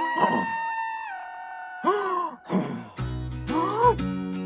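Cartoon background music with a dinosaur character's groaning vocal sounds, rising and falling in pitch. A low bass line comes in about three seconds in.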